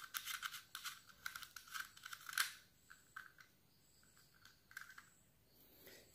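Faint small clicks and scratches of a plastic quartz clock movement being handled as the nut on its hand shaft is unscrewed, most of them in the first couple of seconds, then only a few.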